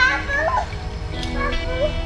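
Young children's voices, high-pitched calls and shouts of play, over background music with steady held tones.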